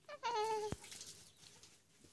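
A young baby's short coo, one note about half a second long that slides slightly down in pitch and breaks off with a click.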